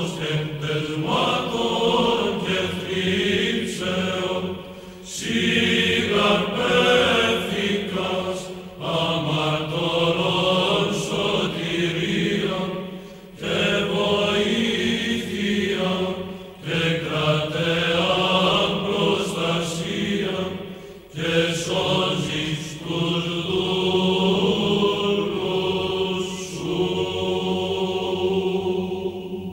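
Orthodox church chant: slow sung phrases a few seconds long, each ending in a brief pause.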